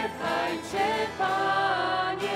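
A mixed group of men's and women's voices singing a slow worship song in harmony, with acoustic guitar accompaniment. The notes are held long, with short breaks between phrases.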